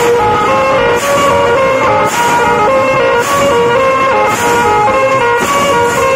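Tasha drum band playing: dense drumming with large brass cymbals crashing about once a second, under a melody of held notes that step between pitches.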